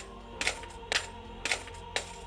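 Coins dropped one at a time onto a pile of coins in a cigar box, a sharp clink about every half second, five in all.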